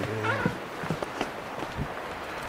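Footsteps of people running on a trail, about three steps a second. A short voiced sound comes at the very start.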